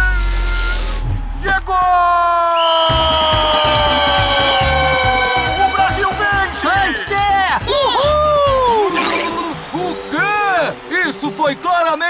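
Cartoon soundtrack with music and comic sound effects. A long falling whistle-like glide runs over a low pulsing beat, followed near the end by a string of short rising-and-falling pitched swoops and wordless character voices.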